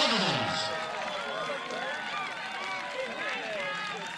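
Several people's voices calling and shouting over one another, with one loud shout falling in pitch at the start.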